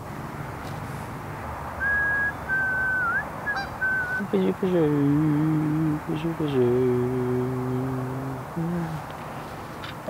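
A thin, high whistled tone with small wiggles, then a man humming a few long, low held notes for several seconds.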